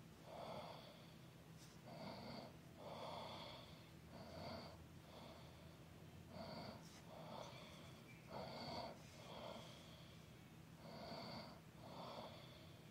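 Faint breathing close to the microphone, in and out through the nose, a breath roughly every second, each with a faint whistle.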